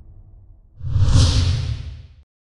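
Whoosh sound effect with a deep low boom, swelling in suddenly just under a second in and fading toward the end, as a logo reveal. It follows the dying tail of theme music.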